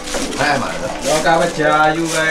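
People talking: conversational voices throughout.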